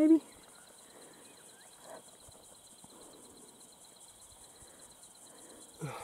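Faint, steady high-pitched insect trill, a rapid even pulsing, over quiet rural background hiss.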